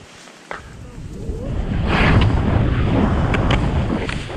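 Wind noise on the microphone and skis sliding and scraping over firm snow as a skier moves off down a steep couloir, building up from about half a second in. A couple of short ticks about three seconds in.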